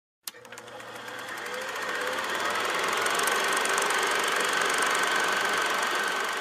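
Vintage film projector running, a rapid, even mechanical clatter with a faint steady whine, starting with a click and building up over the first couple of seconds.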